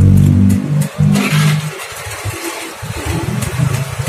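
An engine running, with a steady low hum that is loud for the first half second and then drops away to a weaker, uneven level.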